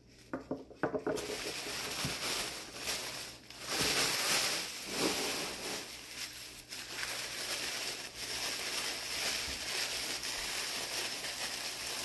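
Thin white wrapping paper crinkling and rustling steadily as a small wrapped stone is unwrapped by hand, loudest about four seconds in.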